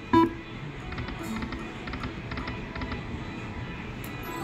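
Aristocrat Buffalo Gold slot machine starting a spin with a short loud tone, then its electronic reel-spin sound effects with a steady run of quick clicks as the reels turn and stop. No win jingle follows: a losing spin.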